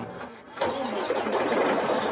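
A car engine started by push-button: a click about half a second in, then the engine cranks, catches and runs steadily.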